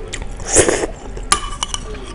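Noodles slurped into the mouth from a spoon, a noisy suck about half a second in, followed by a few sharp clinks of the spoon against the ceramic soup bowl.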